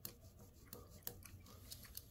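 Faint scratching of a pencil on paper in short, irregular strokes, as a box on a printed sheet is marked or coloured in.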